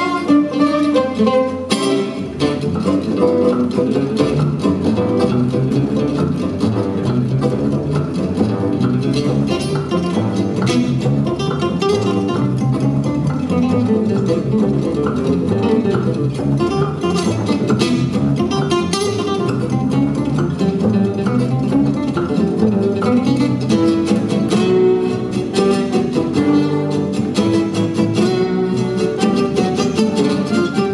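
Live gypsy jazz: an oval-soundhole, Selmer-Maccaferri-style acoustic guitar playing a fast picked melody line with the band accompanying.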